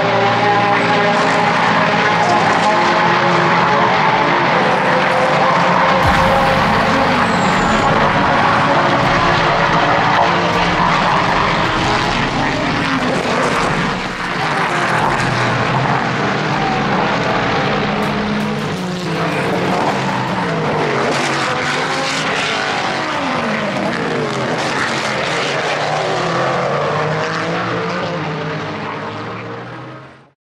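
Sports-prototype and GT race cars running at speed on the circuit, engine notes rising and falling in pitch as cars pass and shift gears, fading out near the end.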